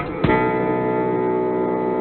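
Soundtrack music pitched down five semitones: one chord struck about a quarter second in and left ringing, held steady.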